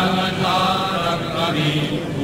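Voices chanting in slow, drawn-out phrases, with a short break about halfway through.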